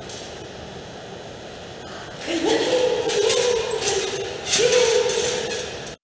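Soundtrack of a played-back therapy video: a steady hiss, then from about two seconds in a high voice holding long drawn-out vowel sounds at a steady pitch, twice. The audio cuts off suddenly at the end.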